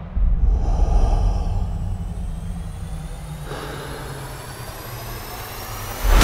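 Trailer sound-design build-up: a low rumble with a thin whine slowly rising in pitch over it, swelling toward a hit.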